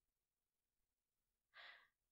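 Near silence, then a short, soft breath from a woman near the end.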